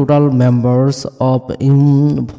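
A man's voice speaking in slow, drawn-out syllables, almost chanted.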